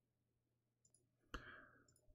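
Near silence: room tone, broken by one short click a little over a second in.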